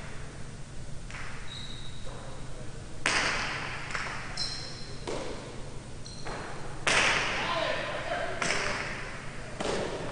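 Jai alai pelota cracking against the fronton walls during a rally, with loud sharp impacts about three seconds in and again about seven seconds in, and lighter ones near the end, each ringing out in the big hall. There are short high squeaks between the hits.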